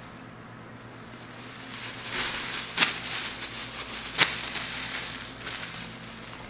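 Soft rustling with two sharp clicks about a second and a half apart, as from handling a plastic candy bag.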